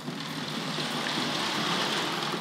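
Hornby 00-gauge model of the LNER A4 Mallard running along the track: a steady whirr and rattle of its motor and wheels on the rails, growing slightly louder.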